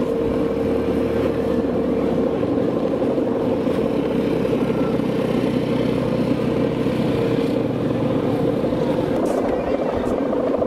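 The humming bow (guangan) of a Balinese kite droning on one steady pitch in strong wind, with a rush of wind over it.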